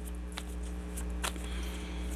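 A deck of tarot cards being shuffled by hand: a few faint card clicks and a soft sliding rustle, over a steady low hum.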